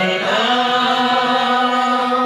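A man's voice holding one long, steady sung note of a Gujarati song, with a musical accompaniment under it.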